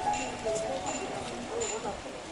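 Background music: a melody of held notes moving in steps, with light percussive clicks about twice a second.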